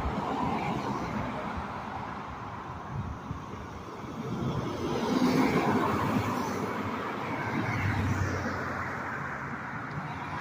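Road traffic: cars driving past on a street, the tyre-and-engine noise swelling louder about halfway through and again near the end.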